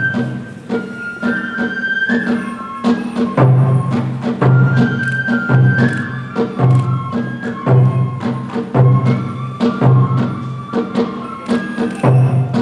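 Kagura accompaniment: a bamboo flute playing a high, gliding melody over a steady drum beat, about one stroke a second, with sharp percussive clicks in between.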